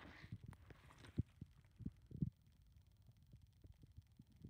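Handling noise from the camera: a few irregular, muffled low thumps and light clicks as fingers shift against the body near the microphone, over a faint hum.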